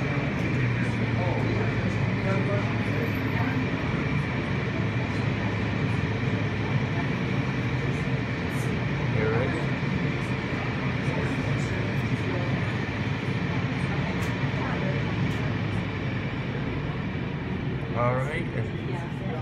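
Automatic car wash running: steady noise of water spraying and wash machinery, with a continuous low hum and a faint high steady tone.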